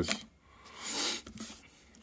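Sleeved trading card and rigid plastic toploader rubbing under the fingers: one brief plastic rubbing hiss about a second in, then a few light taps.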